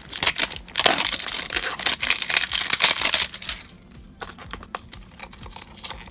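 Foil wrapper on a small cardboard blind box crinkling and tearing as it is peeled off by hand. There are dense crackles for about three seconds, a short lull, then sparser crinkles.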